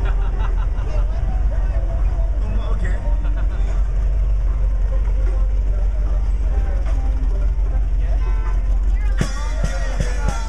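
Busy street noise: a steady low traffic rumble and crowd voices, with the one-man band's music quieter beneath. Near the end the electric guitar and singing come back in strongly.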